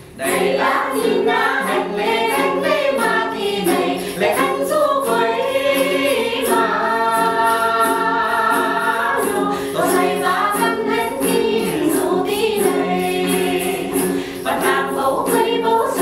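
Tày women's vocal ensemble singing together to the accompaniment of đàn tính long-necked lutes, over a quick, even beat. The singing comes in at the very start and holds one long note in the middle.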